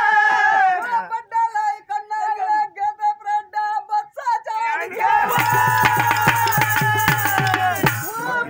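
Live folk music: a sustained melody line, broken into short repeated notes for a few seconds, then a drum joins about five seconds in with quick, steady strokes over a low bass.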